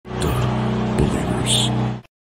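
Loud logo-intro sound effect: a steady low drone with a few short sharp accents, cut off suddenly at the end.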